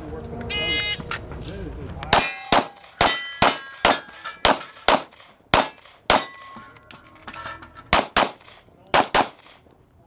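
Electronic shot timer beeps, then a couple of seconds later a pistol fires a steady string of single shots about half a second apart, with steel plates ringing after the hits. After a short pause come two quick double shots on paper targets.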